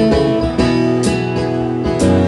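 Acoustic guitars strumming full chords in a steady country-style rhythm, the instrumental opening of a song, with fresh strums about half a second in, at one second and again near the end.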